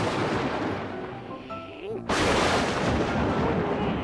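Lightning-strike sound effect: two sudden loud blasts, the second about two seconds in, each dying away over a second or so, over light background music.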